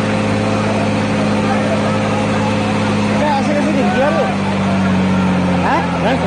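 A vehicle engine idling with a steady hum, with people's voices in the background about halfway through and again near the end.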